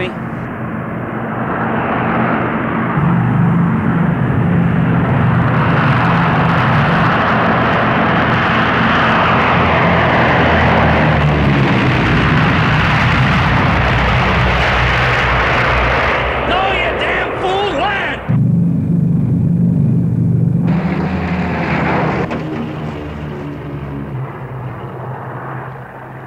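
Airplane engine running loud, swelling over the first few seconds and holding steady, with a sudden brief dip about eighteen seconds in before it slowly dies away near the end.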